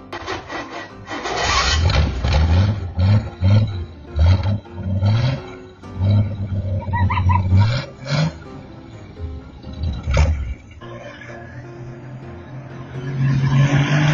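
Ford Falcon 3.6-litre inline-six engine in a custom motorcycle being revved in short repeated bursts, the pitch rising with each blip of the throttle. About ten seconds in it drops to a steadier, quieter run, then rises again near the end as the bike pulls away.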